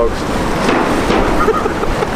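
Ocean surf washing against a rocky seawall, a steady rushing noise, with wind rumbling on the microphone and a few faint words of voice partway through.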